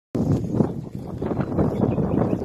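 Wind buffeting a phone's microphone: a loud, uneven low rumble that rises and falls in gusts.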